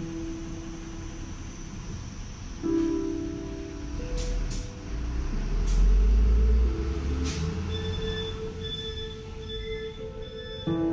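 Background music of long held notes, with a few sharp clicks and a deep rumble that swells to its loudest a little past the middle.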